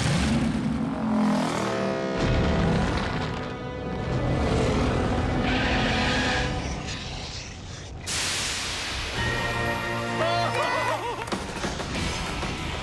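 Dramatic cartoon soundtrack music over rumbling, booming sound effects, with a sudden shift in the sound about eight seconds in.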